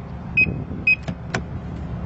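Two short, high beeps from a 2012 Bentley Continental GT confirming that the doors have locked through the keyless-entry handle button, followed by a sharp click. The engine idles steadily underneath.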